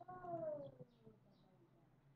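A single drawn-out animal call, falling in pitch, lasting a little under a second at the start.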